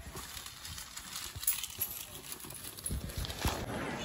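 Street ambience with faint voices and a few irregular sharp knocks, clustered around the middle and again near the end.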